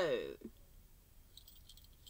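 A woman's voice trails off in the first half second, then only faint, light clicks and rustles of objects being handled.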